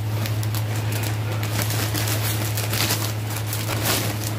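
Plastic packaging and fabric rustling and crinkling as clothing is handled, in many short crackles, over a steady low electrical hum.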